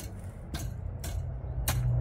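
Metal garden rake dragged through loose, stony soil: scraping with a couple of sharp clicks as stones strike the tines, over a steady low rumble.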